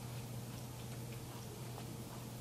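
Quiet room tone in a lecture room: a steady low hum with faint, irregular ticks.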